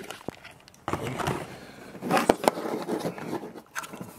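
Handling noise of a network cable and its plastic plug on a tabletop: scraping and rubbing, with two sharp clicks a little past halfway.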